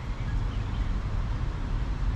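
Steady low rumble of outdoor background noise, with no distinct sound standing out.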